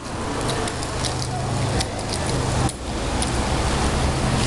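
Steady outdoor rush of road traffic noise, dipping briefly nearly three seconds in.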